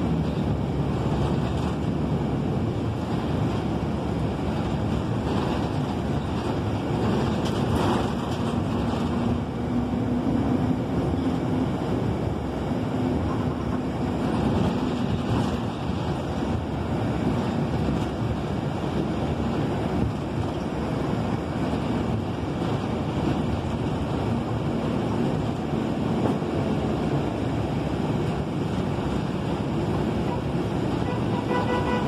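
Interior noise of a moving MTA city bus: a steady wash of engine and road noise with no pauses. A faint low hum comes in for several seconds midway.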